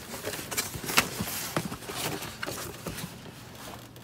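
A cardboard box being opened by hand and the magazines inside handled: irregular rustles, scrapes and light knocks of cardboard and paper, the sharpest about a second in.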